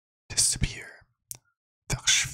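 A man whispering very close to a microphone: one short breathy whispered phrase, then a brief click near the middle.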